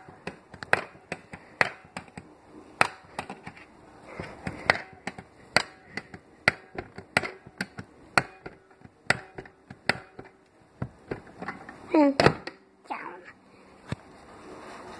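A plastic toy doll chair being handled, with an irregular run of sharp clicks and knocks, a few a second, as its parts are moved up and down.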